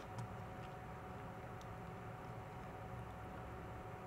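Faint steady room hum and hiss with a thin steady tone, and a couple of faint ticks.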